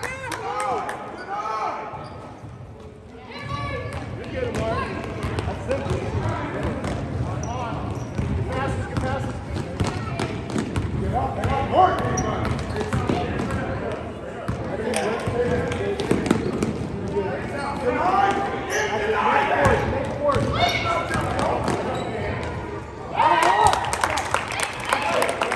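A basketball being dribbled and bounced on a gym floor during live play, short sharp knocks coming irregularly throughout, under the voices of players and spectators in the echoing hall.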